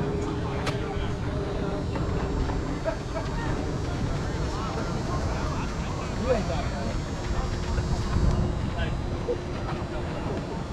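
Softball players' voices calling out at a distance over a steady low rumble, with a faint steady hum.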